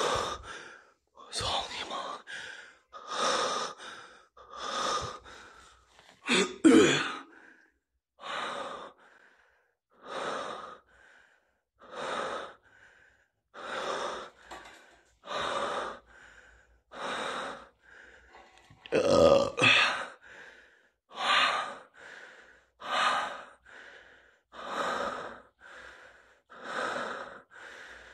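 A man breathing heavily close to the microphone, a breath about every second and a half to two seconds, with two louder, ragged breaths about a third of the way in and again past the middle.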